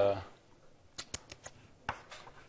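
Writing strokes on a lecture board: a quick run of sharp taps and ticks about a second in, and one more near the end.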